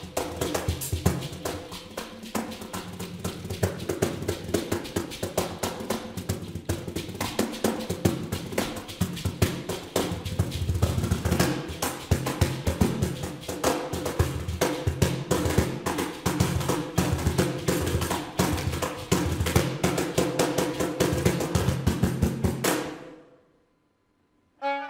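Cajón played fast with both hands, a dense run of slaps and deep bass strokes that stops near the end.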